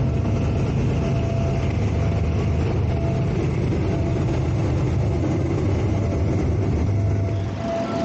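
Diesel locomotive hauling tank wagons over a street level crossing: its engine runs with a steady low rumble, with a thin steady tone above it.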